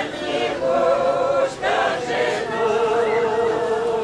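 A group of Doukhobor women singing a cappella, in long held notes that waver and slide slowly from one pitch to the next, in the traditional unaccompanied hymn singing of the Doukhobors.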